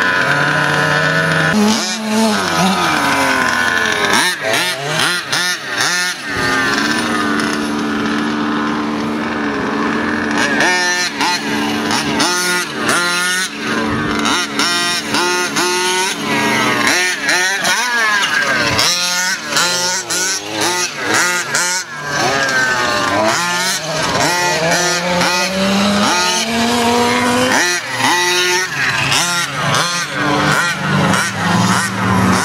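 Two-stroke petrol engine of a 1/5-scale King Motor X2 RC truck revving up and down over and over, its pitch rising and falling quickly, with a few seconds of steadier running around the middle.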